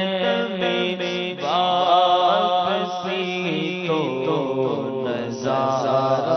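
A man reciting an Urdu naat unaccompanied, holding long, wavering, ornamented notes over a steady low drone, with a fresh phrase starting about a second and a half in.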